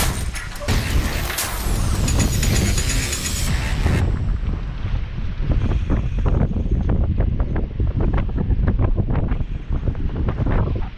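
Wind buffeting the microphone, with sea surf washing against the rocks underneath.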